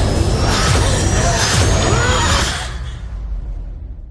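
Movie trailer soundtrack: a dense mix of music and sound effects, with low hits and gliding tones, fading out over the last second and a half.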